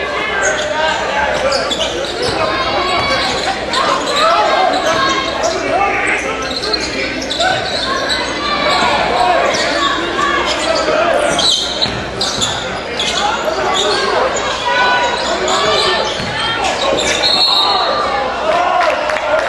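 Live basketball game sound in a gymnasium: many voices from the crowd and players overlapping throughout, with a basketball bouncing on the hardwood court and short sharp knocks.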